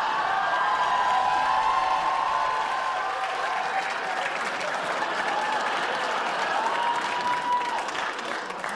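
Studio audience applauding, with a few voices calling out over the clapping.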